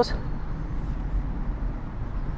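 Steady low background rumble with no clear single event.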